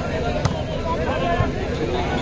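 Two sharp smacks of a volleyball being struck during a rally, the first and louder about half a second in, the second a little under a second later, over a steady babble of spectator and player voices.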